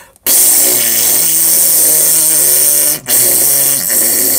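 A man making a loud, spluttering hiss with his mouth and voice, imitating explosive diarrhea on the toilet. It cuts off briefly about three seconds in, then starts again.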